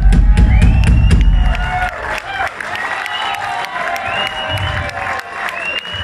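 Live rock band on stage: a loud crash of drums and bass rings out over the first two seconds. Then comes lighter drum and cymbal playing and guitar under a cheering crowd.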